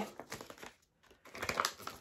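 Paper yarn ball band crinkling as it is handled and turned over in the hands, in two short spells with a brief pause about a second in.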